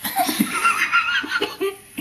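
A person laughing in a run of short, breathy bursts.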